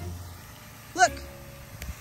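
A single spoken word, "Look," about a second in, over a faint, steady outdoor background with a low rumble near the start.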